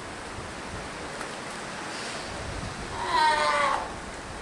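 Ten-day-old Steller sea lion pup calling once near the end, a single call about a second long that falls in pitch.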